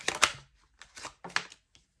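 A tarot deck being handled: a loud card snap right at the start ends a run of quick shuffling, then a few soft, separate card clicks and slides about a second in as a card is drawn from the deck.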